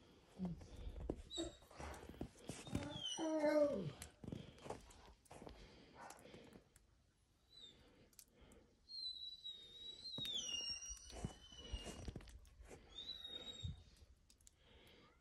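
A short whining animal call that falls in pitch, about three seconds in, then high thin gliding whistles around ten seconds in and again near the end, over faint clicks and rustling.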